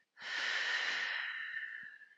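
A woman's long, audible exhale, strongest at first and fading away over about a second and a half.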